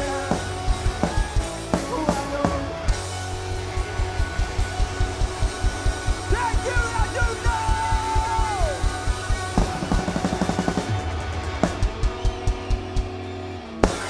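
Pop-punk band playing live: a fast, steady kick-drum beat under distorted electric guitars and bass, with a sliding melodic line in the middle. The song closes on a final hit near the end.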